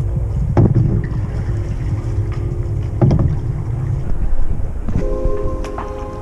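Kayak being paddled with a double-bladed paddle: water splashing and dripping from the blades, with two sharp strokes about half a second and three seconds in. Heavy wind rumble on the camera microphone runs underneath.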